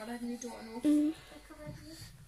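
Indistinct voices talking quietly, with a short louder utterance about a second in.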